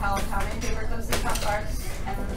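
Clicking and clattering of small hard objects being handled at the desks, with a sharp cluster of clicks a little after one second in, over children's chatter in a classroom.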